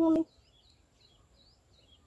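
A man's intoned, chant-like voice breaks off just after the start. A small bird then gives a quick series of about seven short, high chirps.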